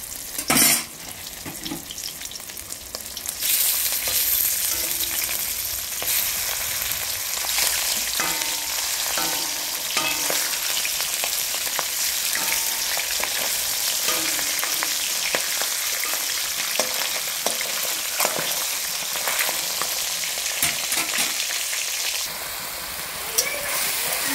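Fish pieces frying in hot oil in a metal wok: a steady sizzle that grows louder a few seconds in, with a metal spatula scraping and clicking against the pan as the pieces are turned. A single sharp knock just before the sizzle begins.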